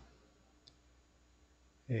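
Quiet room tone with one faint, short click about two-thirds of a second in, followed near the end by a man's brief hesitant "eh".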